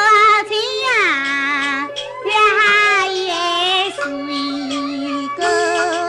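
A high-pitched voice singing a Taiwanese opera (gezaixi) aria with instrumental accompaniment, the notes wavering with vibrato and sliding, with short breaks between phrases. It is an old radio broadcast recording.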